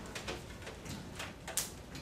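Light clicks and rustling of plastic oxygen tubing being handled at a wall-mounted oxygen flowmeter, with one sharper, brief noise about one and a half seconds in.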